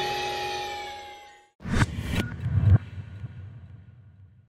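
The closing music's last chord rings out and fades away. After a brief gap a short sound logo comes in: two sharp hits about half a second apart over a low rumble, dying away.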